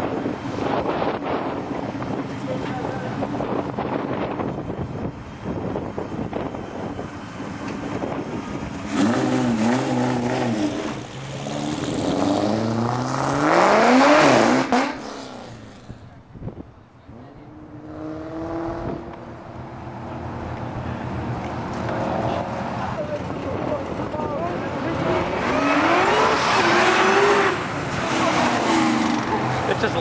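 Ford Mustang SVT Cobra's 4.6-litre DOHC V8, fitted with a wet nitrous kit, revving and accelerating hard, its pitch climbing in several rising sweeps. It is loudest about halfway, drops away briefly, then climbs again.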